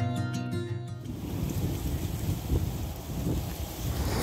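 Plucked acoustic guitar intro music ends about a second in, giving way to outdoor wind and water noise with an uneven low rumble of wind on the microphone.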